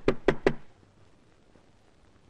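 Knocking on a closed panelled door: a quick run of about three sharp knocks in the first half second.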